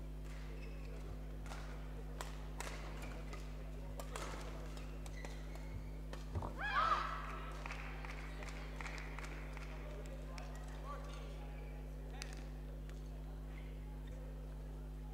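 Indoor sports-hall background: a steady low hum with distant voices and scattered light clicks and taps. About halfway through comes the loudest sound, a short squeak that rises in pitch.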